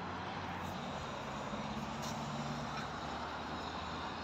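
Road traffic on a multi-lane road: a steady wash of tyre and engine noise from passing cars, with one vehicle's engine hum standing out for about a second near the middle.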